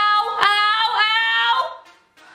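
A woman's long, high-pitched cry of pain, held steady for about a second and a half and then trailing off, as a peel-off mask is torn from her skin.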